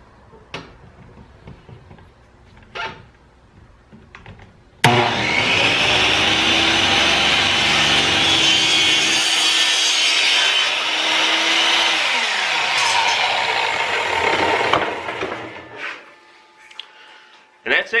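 Chop saw's motor starting abruptly about five seconds in and cutting through 1¼-inch PVC pipe at a 45-degree angle, running loud and steady for about seven seconds. It is then switched off and winds down with a falling hum. A few faint clicks of handling come before it starts.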